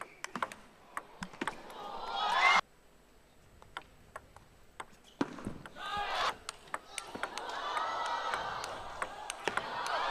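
Table tennis ball clicking off bats and table in a rally while arena crowd noise swells, cut off suddenly about two and a half seconds in. A few more ball clicks follow, then the crowd cheers and shouts, growing louder near the end.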